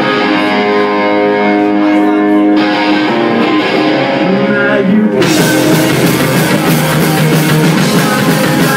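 Live punk rock band on an iPhone 4's microphone: electric guitars hold sustained chords, changing chord about two and a half seconds in, then drums and the full band come in about five seconds in.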